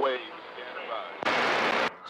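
A burst of CB radio static from the receiver's speaker between two transmissions: a hiss lasting just over half a second, starting a little past a second in and cutting off suddenly, with the channel fainter before it.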